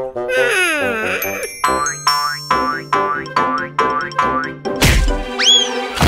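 Cartoon music and sound effects. A descending sliding tone opens it, then a sneaky plucked tune plods along in even steps over a held bass note. Near the end a whoosh comes, followed by a quick whistle that rises and falls.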